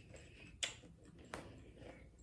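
Two faint clicks about three quarters of a second apart, from a metal fork knocking against the wooden cutting board as it breaks into a piece of salmon.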